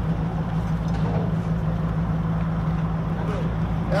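Heavy truck's diesel engine running steadily, a low even hum with a rumble beneath it.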